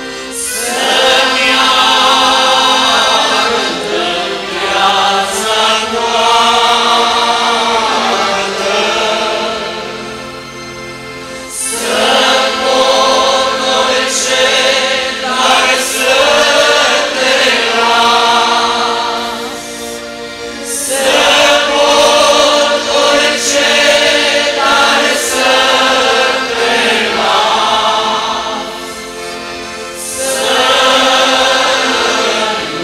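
A large group of men and women singing a hymn together, accompanied by accordions and an electronic keyboard. The song moves in long sung phrases, with brief dips in loudness between them about ten and twenty seconds in.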